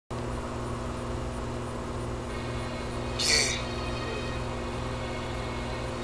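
Steady low mechanical hum with faint even tones, broken by a brief high hiss about three seconds in.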